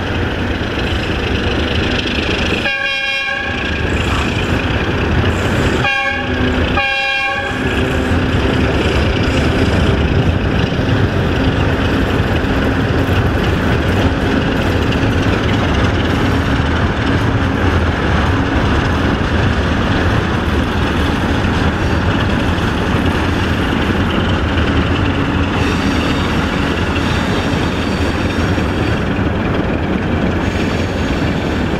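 Horn of a Romanian 060-DA diesel-electric locomotive sounding three blasts: a longer one about three seconds in, then two short ones around six and seven seconds. Steady road and engine noise from a car pacing the train runs underneath.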